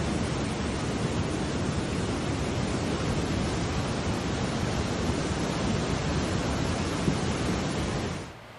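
A flooding brook's water rushing in a steady, unbroken noise during a flash flood, heard through a phone's microphone.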